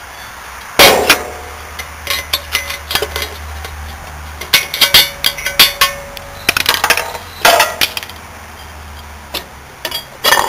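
Screwdriver prising the welded steel top shell off a small hermetic fridge compressor: a series of metallic clangs and clinks. The loudest comes about a second in and rings on briefly, with bunches of quicker clinks around the middle as the lid works loose.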